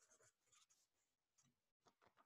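Near silence, with a few faint, short scratchy rustles of a sheet of paper being handled.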